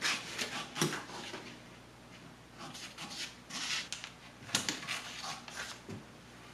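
Scissors cutting through pattern paper: several short runs of crisp snips with paper rustling, and a brief pause about two seconds in.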